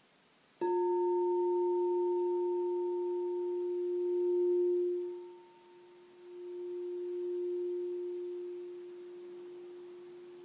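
Frosted crystal singing bowl, tuned for the heart chakra, struck once with its mallet about half a second in and then ringing with a long, steady tone. The tone fades, dips around five seconds in and swells back without a new strike.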